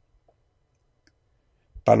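Near silence in a pause between words, broken by a few faint short clicks; a man's voice starts again just before the end.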